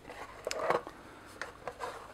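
A plastic charging cradle scraping and knocking against its moulded plastic box tray as it is lifted out by hand. There is a short scrape with clicks about half a second in, then a few light ticks.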